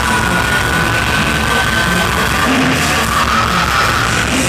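Live heavy rock band playing loud, with distorted electric guitars, bass and drums; a high note is held through roughly the first half and another comes in near the end.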